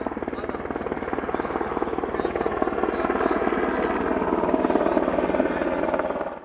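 Military helicopter flying overhead, its rotor blades giving a steady rapid chop that grows slightly louder.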